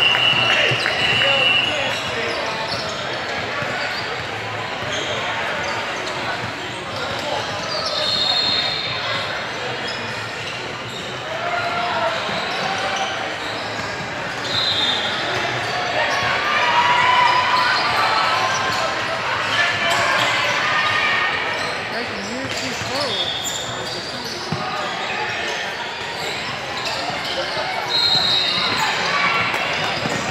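Basketball game on a hardwood court in a large, echoing gym: the ball dribbling, sneakers squeaking in several short high-pitched chirps, and players and spectators shouting and talking indistinctly.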